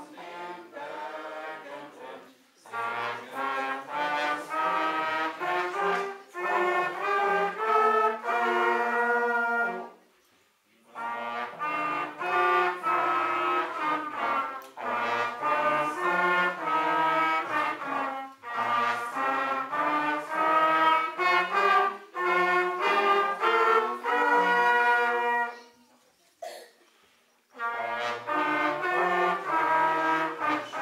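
Small brass ensemble of trumpets, tenor horns and trombones playing a folk-song melody note by note. It plays in phrases, with short breaks about ten seconds in and again near the end.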